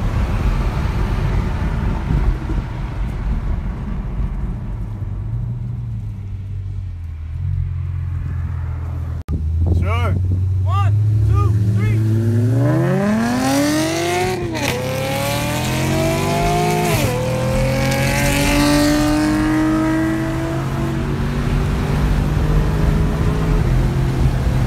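A 2017 Camaro SS's 6.2-litre V8 heard from inside the cabin, running steadily at first, then after a break at full throttle with its pitch climbing hard. The automatic gearbox upshifts twice, with the pitch dropping at each shift, and the engine keeps pulling up through the next gear.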